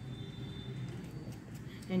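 Room tone: a steady low hum, with no clear handling sounds, and a voice starting right at the end.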